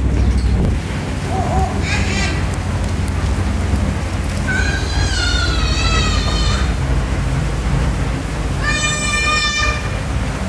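A child's high-pitched calls: a short one about two seconds in, a longer wavering one in the middle, and a steady held one near the end, over a dense low background rumble.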